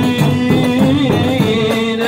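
A man singing an Islamic devotional chant (sholawat) into a microphone, holding long notes over a steady hand-drum beat.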